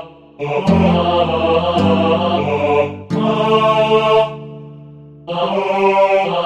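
General MIDI backing track playing sustained synthesized choir 'aah' chords over bass notes. The phrases drop away briefly just after the start and again for about a second after the middle before coming back in.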